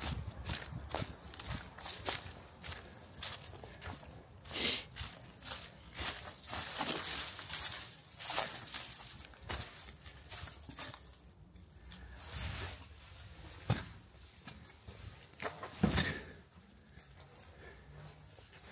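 Footsteps of a person walking over dry fallen leaves and forest litter, then onto the hard floor of a brick passage: irregular crunches and scuffs, with a louder knock near the end.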